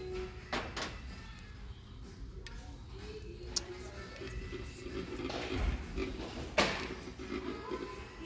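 Faint background music with distant voices, broken by a few sharp clicks and knocks; the loudest knock comes about six and a half seconds in.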